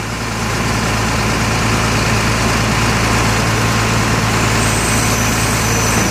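Truck engine idling steadily with a constant low hum.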